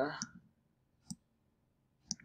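A single computer mouse click about a second in, while a crop box is being adjusted in photo-editing software.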